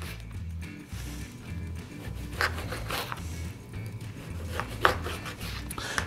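A small knife slicing a lemon into wedges on a cutting board, with a few short, sharp cuts against the board, the clearest about two and a half, three and five seconds in. Background music with a steady bass beat runs underneath.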